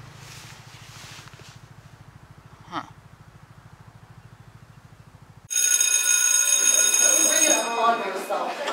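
An electric school bell rings loudly, starting suddenly about five and a half seconds in and lasting about two seconds, with voices starting under it. Before it there is only a faint low hum and one short chirp.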